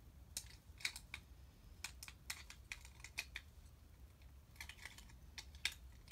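Faint, irregular small clicks and taps of AAA batteries being pressed into the battery compartment of a LEGO Super Mario figure.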